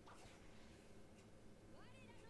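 Near silence: faint room tone, with a faint high-pitched rising cry near the end.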